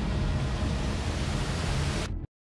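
Steady rushing ambient noise with a low rumble underneath.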